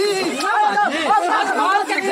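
Several people's voices talking loudly over each other, with no break.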